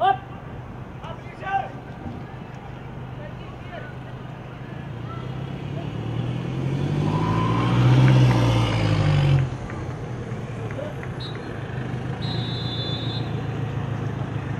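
A motor vehicle passing: an engine sound that swells over several seconds, its pitch rising and then falling as it peaks about eight seconds in, and cuts off abruptly soon after.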